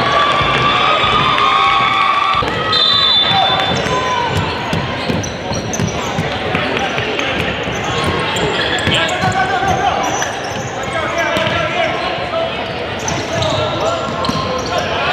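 Indistinct shouting and chatter from players and spectators echoing in a gymnasium, with a futsal ball bouncing and being kicked on the hardwood court.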